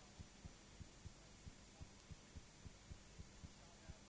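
Near silence: a faint steady low hum with soft, regular low thumps about three a second.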